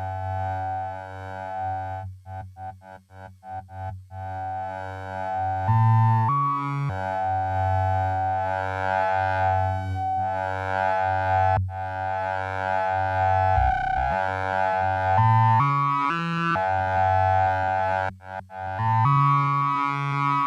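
Sibilla eurorack drone synthesizer played from a keyboard: held notes rich in overtones that change pitch several times. Its internal envelope's release time is being adjusted, and between about two and four seconds in the sound is cut into short repeated pulses.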